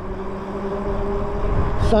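Lyric Graffiti electric bike's motor giving a steady low hum while riding, over wind rumble on the microphone and tyre noise.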